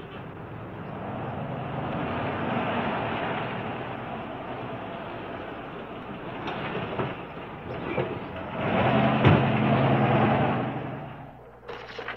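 A motor vehicle running, building up over the first few seconds and growing loudest from about nine seconds in, with a sharp knock about nine seconds in, then fading away near the end.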